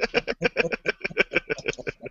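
A man laughing over a video-call microphone in a quick, even run of short pulses, about ten a second.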